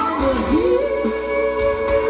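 Live rock band playing, with electric guitars, keyboard and drum kit under a singing voice whose line slides up about half a second in and holds a note. Heard through the stage PA on a camera microphone in the crowd.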